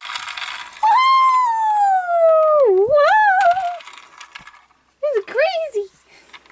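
A person's high-pitched wordless "wheee"-like vocalization playing out a toy helicopter's flight. It is one long call that glides down in pitch, dips, then wavers. A shorter wavering call follows near the end, after a brief rushing hiss at the very start.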